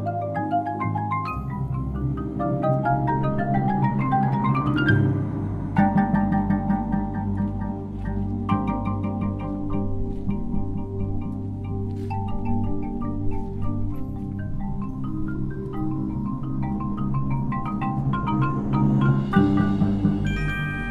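Drum corps front ensemble playing marimbas, xylophone and other keyboard percussion over timpani: quick climbing runs of notes for the first five seconds, then held, rolled chords over a steady low bass.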